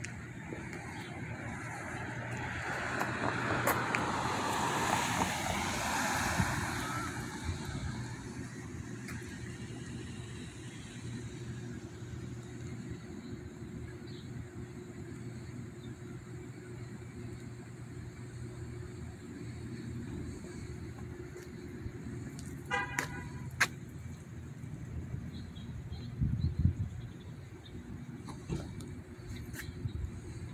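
Street traffic: a passing car swells and fades over several seconds near the start, over a steady low hum. Near the end there is a brief, rapidly pulsing tone, and a few seconds later a low thump.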